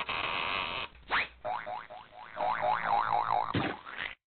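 Cartoon comedy sound effects: a short noisy burst, then a quick rising slide-whistle glide about a second in, followed by a wobbling tone that swings up and down in pitch several times.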